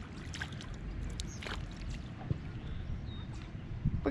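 A few light splashes and drips of kayak paddles working in calm lake water, over a low steady rumble of wind on the microphone.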